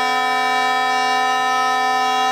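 Bagpipe playing one long held chanter note over its steady drone.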